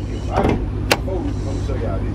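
A single sharp click of a Dodge Charger's hood release lever being pulled under the dash, over a steady low hum.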